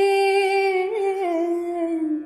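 A woman's unaccompanied voice holding one long sustained note, which dips slightly lower about halfway through.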